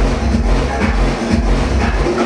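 Loud electronic dance music playing over a club sound system, with a heavy, pulsing bass beat.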